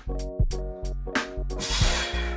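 Background music with a steady beat: sharp drum hits over held bass and mid-range notes, with a short hissing swell near the end.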